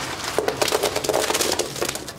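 Wrapped candy pouring out of an upturned backpack: a dense rattle and crinkle of many small pieces falling, starting about half a second in and lasting about a second and a half.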